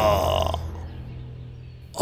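A man's voice holding a drawn-out chanted syllable, which ends about half a second in, followed by a low steady hum that fades away.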